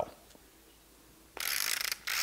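A hand-held pepper mill being twisted, grinding black peppercorns with a dry ratcheting rasp that begins about a second and a half in.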